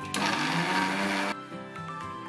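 Electric mixer grinder with a stainless-steel jar run in one short pulse of about a second, grinding dry ingredients to powder, then cut off abruptly. Background music plays underneath.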